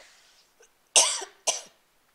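A woman coughing twice into her hand: one cough about a second in, then a shorter one half a second later.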